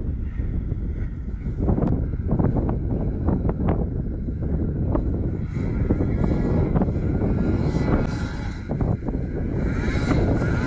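A snowmobile engine droning in the distance and growing louder as the sled approaches, under a heavy low wind rumble on the microphone.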